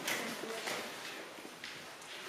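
Faint rustle of sheet music being leafed through, with a brief faint voice murmuring.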